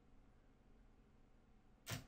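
Near silence: faint room tone with a low steady hum, and one short sharp sound near the end.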